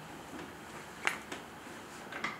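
Two sharp clicks about a quarter of a second apart, a little after a second in, over quiet room tone.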